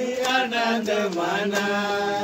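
A voice singing a Christian devotional song holds a long, slowly falling note at the end of a line, over a few sharp percussive hits.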